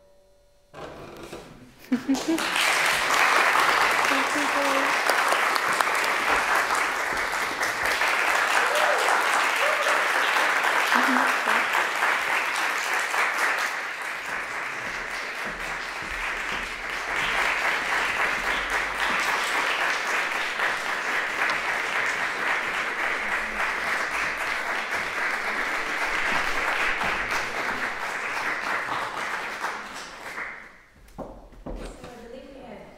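Audience applauding, starting about two seconds in after the music has stopped, dipping a little mid-way and dying away near the end.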